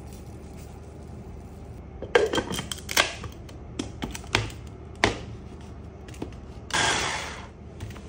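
Hard plastic clicks and knocks as the lid and the LINKChef hand-blender motor unit are fitted onto a mini chopper bowl, scattered over a few seconds. Near the end comes a louder rush of noise about a second long that fades away.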